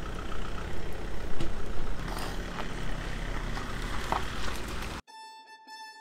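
Steady outdoor background noise with a low rumble and a few faint clicks. About five seconds in it cuts off and instrumental fiddle music begins.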